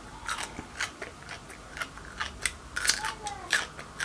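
A person chewing a mouthful of raw white radish, making a run of irregular crisp crunches.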